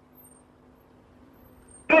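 Near silence in a pause between spoken phrases, with only a faint steady hum; speech starts again right at the end.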